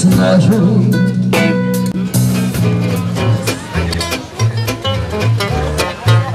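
Live band music that switches about halfway through to an acoustic trio: a plucked upright double bass and two acoustic guitars playing a swing-style tune.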